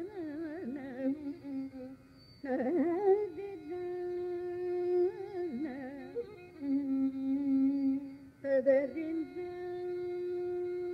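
Carnatic ragam (alapana) in raga Shanmukhapriya: a high voice sings wavering, ornamented phrases that settle into long held notes, with a short break about two seconds in.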